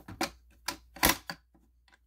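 A few short clicks from a Simplex fire alarm pull station being handled as its pull-down bar is pulled down, the loudest snap about a second in.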